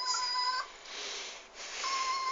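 Red toy poodle crying in long, high, steady whines, played back from a laptop: one cry breaks off about half a second in, a softer hiss follows, and a second cry starts near the end. The dog is crying over ducks it wants to go after.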